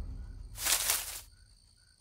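Bush leaves rustling in a brief burst about half a second in, as hands push the foliage apart, over faint night insects chirping with a steady high tone. A low rumble fades out at the start.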